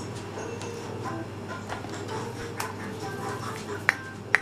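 Faint music and voices in the background over a low steady hum, with a couple of light clicks in the second half.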